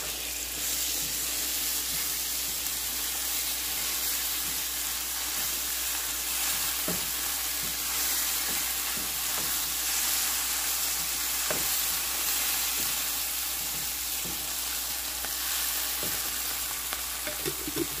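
A red onion-and-berbere paste frying in a nonstick pan with a steady sizzle. A wooden spoon stirring it gives a few light knocks, at about seven seconds, at about eleven seconds, and at the end.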